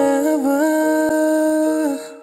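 A male singer holding one long sung note over soft backing music, with a slight dip in pitch about half a second in before settling and holding steady.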